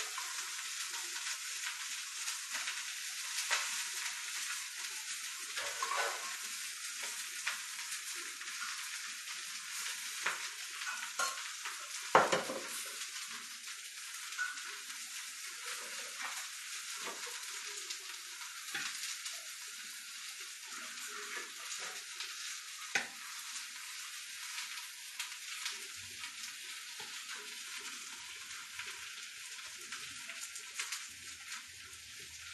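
Food sizzling on a hot sizzler plate greased with ghee, under a steady hiss, while a spoon scrapes and clinks against a metal pot as food is served onto the plate. One loud knock comes about twelve seconds in.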